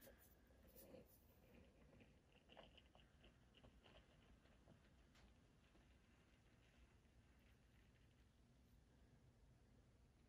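Near silence, with faint soft ticks during the first half as the plunger of a stainless Brütrek OVRLNDR French press is pushed slowly down through the coffee.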